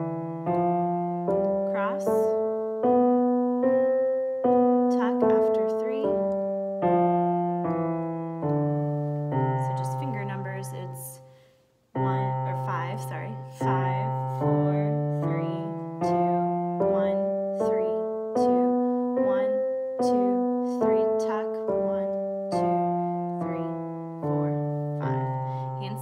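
Roland digital piano playing a C major scale with the left hand, one note at a time at a steady pace, up and back down. It fades out briefly about 12 seconds in, then the scale runs up and down again.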